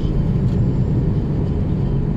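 Steady low rumble of road and engine noise heard from inside the cabin of a moving car.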